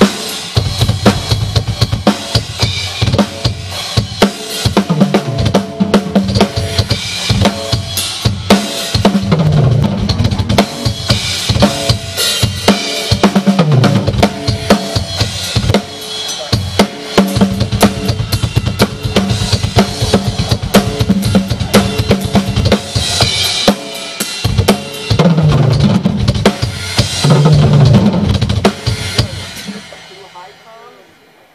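Full drum kit (kick, snare and toms) played loud through a stage PA during a band sound check, with pitched instruments sounding along. It stops right at the end.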